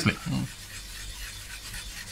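Coarse scouring side of a kitchen sponge, wet with isopropyl alcohol, scrubbing a printed circuit board to strip its spray-paint resist: a faint, steady rasping rub.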